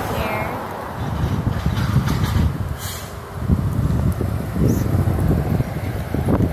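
Wind buffeting a phone's microphone in irregular gusts, a low rumble, with a couple of brief handling knocks a couple of seconds in.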